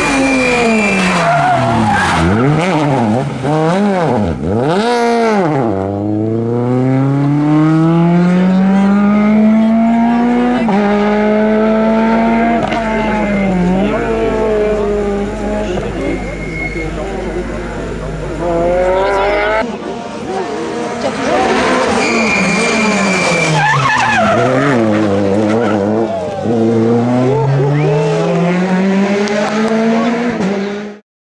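Peugeot 208 VTi R2 rally car's 1.6-litre four-cylinder engine under hard driving. The revs drop and rise sharply several times as it brakes and downshifts into a corner, then climb steadily and hold as it accelerates away. About twenty seconds in the sound cuts to a second pass with the same drop in revs and climb as it powers off.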